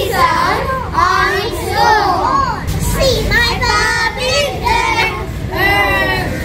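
Young children's voices singing and chanting a phonics alphabet song together, in short repeated phrases.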